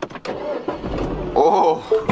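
Mini Countryman engine cranking over and starting.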